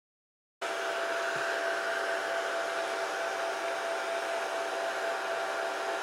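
Handheld blow dryer running steadily, drying wet ink spray on cardstock. It starts suddenly about half a second in, a steady rush of air with a few held hum tones.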